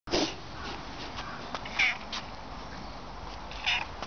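Domestic cat meowing: three short calls, one right at the start, one a little before two seconds in, and one near the end.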